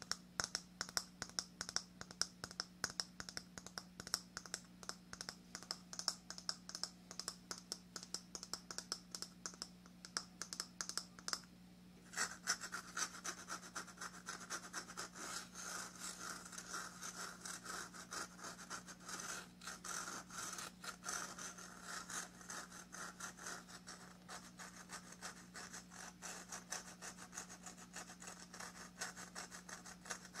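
Fingernails tapping rapidly on a coconut, then after a brief pause about twelve seconds in, fingernails scratching steadily over the coconut's fibrous husk. A faint steady hum runs underneath.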